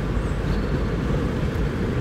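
Steady engine and road rumble heard from inside a car's cabin while driving.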